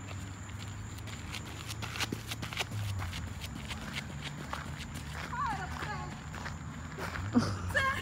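Footsteps on a gravel path, a regular series of steps about three a second, over a steady low hum. A faint voice comes in briefly partway through and again near the end.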